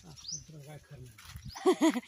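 A woman's short burst of laughter, three quick pitched 'ha' sounds, near the end, after low murmured talk.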